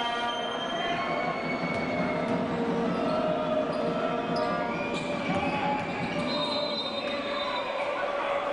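A basketball being dribbled on an indoor court during a game, with the voices of the crowd filling the arena.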